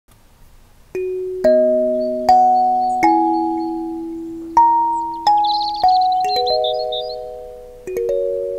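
Gecko kalimba plucked with the thumbs: about ten metal-tine notes, single and in two-note chords, each ringing and slowly fading into the next. The notes begin about a second in and play a slow melody.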